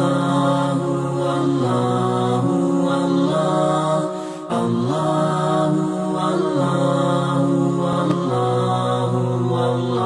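Background vocal music of long, held, layered chanted notes that change pitch every second or two, with a short dip in loudness about four and a half seconds in.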